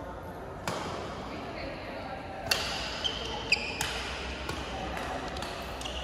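Badminton rackets striking a shuttlecock during a doubles rally: several sharp hits a second or so apart, echoing in a large hall, with short shoe squeaks on the court mat partway through.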